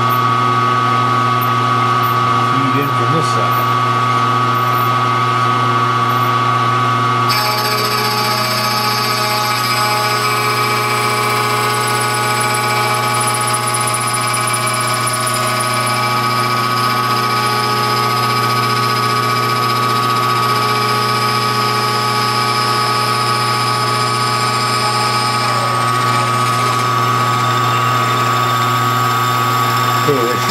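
CNC milling machine spindle running a small disc side cutter through aluminium, machining a model-engine connecting rod: a steady machine hum and whine. About seven seconds in, a higher whine and hiss join it and stay to the end.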